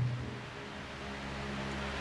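Quiet background music of soft, sustained low chords that change about a second in, over a faint hiss.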